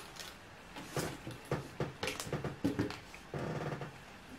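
Quiet handling of cosmetic items: a scatter of light clicks and knocks as things are set down and picked up. Near the end comes a brief, steady, low hum.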